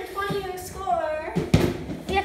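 A voice speaking unclearly for about a second and a half, followed by a single loud thump.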